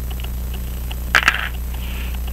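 A brief clack of small metal pocket-watch parts being handled, two or three quick clicks a little over a second in, over a steady low electrical hum.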